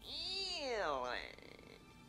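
A man's voice making one drawn-out, cat-like mock animal call that rises and then swoops down, breaking off a little over a second in.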